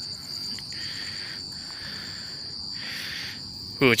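Night insects chirping: a steady high trill with a faster, evenly pulsing chirp above it, and a softer hiss lower down that swells and fades three times.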